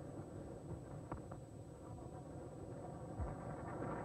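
Cricket ground crowd background on a broadcast, growing louder as the ball runs away to the boundary for four. There is a short knock about a second in, bat striking ball.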